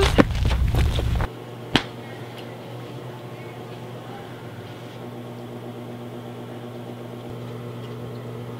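Wind rumbling on the microphone for about a second, cut off abruptly, followed by a steady low electrical hum over quiet room tone, with a single click about two seconds in.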